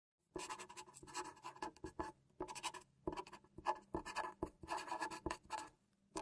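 Felt-tip marker writing in cursive on a sheet of paper: quick scratchy pen strokes in bursts, with short pauses between words.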